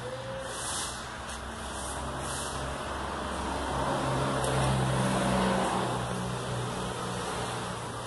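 A low motor-vehicle engine hum that swells about halfway through and fades again.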